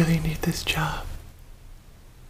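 Speech only: a short stretch of a man's voice in the first second, fading out about a second in, leaving faint room tone with a low hum.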